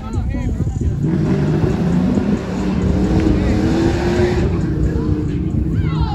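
A motor vehicle passing on the nearby street, its engine note rising for a few seconds, over steady wind rumble on the microphone.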